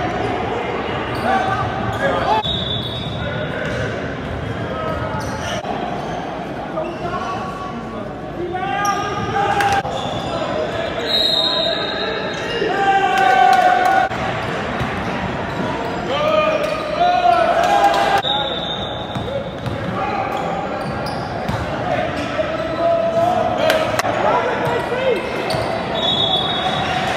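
Live basketball game in a large gym: a ball bouncing on the hardwood court, short high sneaker squeaks every few seconds, and players and spectators shouting, all echoing in the hall.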